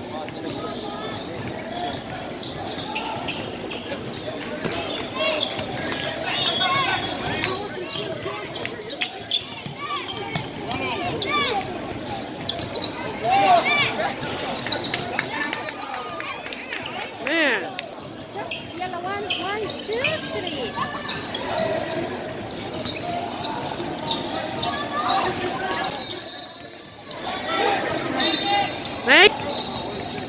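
Basketball bouncing on a hardwood gym floor during play, with spectators talking and calling out, all echoing in a large gym.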